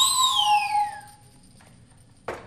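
A whistle sound effect, played live, gliding down in pitch from a high peak over about a second, with two steady lower tones held under it for most of that time.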